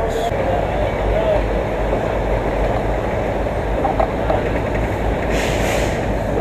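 Matheran Hill Railway narrow-gauge toy train moving off and running, a steady rumble and rattle of the coaches on the rails heard from an open coach doorway, with a brief hiss of noise near the end.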